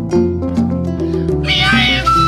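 Live Mandingue band music: kora and electric guitar plucking an interlocking repeating pattern over a steady bass, with hand drums. About a second and a half in, a Fula flute comes in with a wavering, warbling high phrase.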